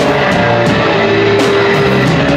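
Hardcore punk band playing loud live: electric guitar holding long notes over drums, with cymbal crashes cutting through.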